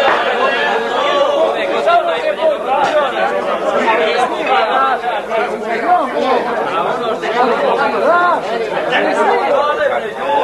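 Several men's voices talking over one another in lively, unbroken group chatter.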